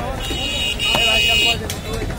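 A high-pitched vehicle horn sounds twice in quick succession, a short toot then a longer one, over voices and the sharp knocks of a cleaver chopping beef on a wooden block.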